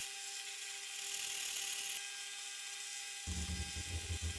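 Faint steady hiss with a light electrical hum, the background noise between narration lines.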